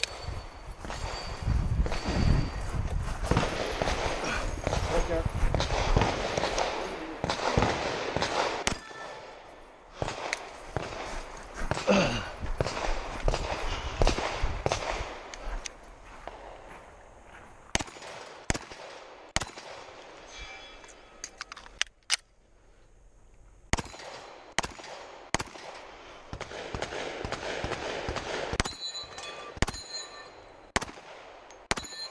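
Semi-automatic pistol shots, about a dozen fired singly and in quick pairs through the second half, at steel targets. Before the shooting, muffled voices and movement noise.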